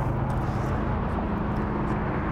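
Steady low mechanical hum of a running motor, with a low drone that shifts a little higher in pitch about halfway through.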